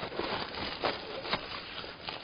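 Rustling of a nylon longboard bag, with a few short knocks and scrapes as the longboard and its trucks are pushed about inside it.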